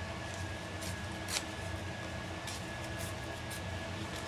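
A few faint short rustles and clicks of cardstock being handled at a craft table, the clearest about a second in, over a steady room hum with a thin high whine.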